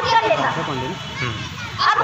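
A girl speaking Hindi into a stage microphone, with other children's voices in the background; her speech dips in the middle and picks up again near the end.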